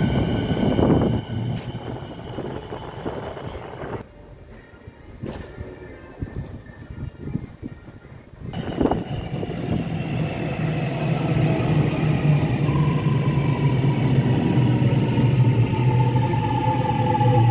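Electric suburban trains in an underground station. A train's running noise with a steady motor whine fades over the first few seconds. After a quieter spell, a second train, an X'Trapolis, comes in with a sudden loud rush, a deep hum and a traction-motor whine that falls in pitch as it slows at the platform.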